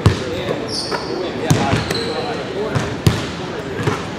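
Basketballs bouncing on a gym court: several irregular thuds, with a short high squeak about a second in.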